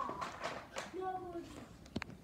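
A girl's voice humming or vocalising without clear words, with a single sharp click near the end.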